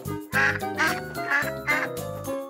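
A cartoon toy duck's quacking, about four short quacks voiced by a performer, over soft children's background music.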